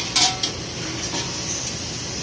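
Thin sheet-metal tank shell clanking as it is handled on the welding machine: two sharp metallic knocks close together in the first half second with a brief ring, then only a steady hiss.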